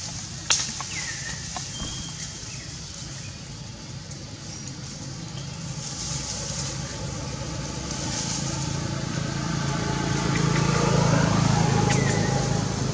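A motor vehicle's engine running nearby, growing steadily louder toward the end as it approaches. A single sharp click comes about half a second in.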